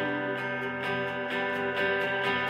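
Electric guitar playing a repeated rhythmic pattern, about two strokes a second, over a sustained keyboard chord, with no vocals.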